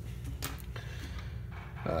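Steady low hum of the room, with one faint click about half a second in, and a man's short hesitation sound at the very end.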